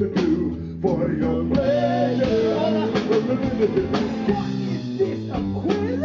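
Live rock band playing, with guitar and drums.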